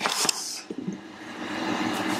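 Bottled beer being poured into a glass: a steady, frothy pour with a low gurgle from the bottle neck that slowly rises in pitch, after a short hiss right at the start.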